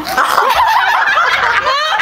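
Several women laughing hard together, loud, high-pitched and overlapping, breaking off just before the end.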